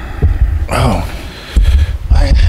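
Low thumping rumble from handheld microphones being moved and handled, loudest at the start and again after about a second and a half, with a brief man's voice sound about a second in.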